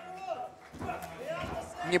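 Voices in the arena with a dull thud of a boxing glove landing about a second and a half in: a left punch to the body.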